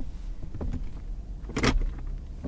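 Steady low rumble of a stopped vehicle idling, heard from inside the cabin, with a brief sharp noise about one and a half seconds in.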